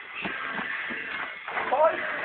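Footsteps, about three a second, then near the end a person's loud yell with a rising, questioning pitch: "Five?", asked after losing count of the rounds.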